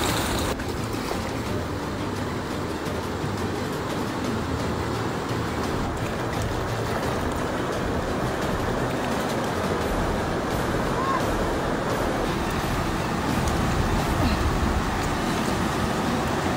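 Steady rushing of a river flowing over rocky rapids.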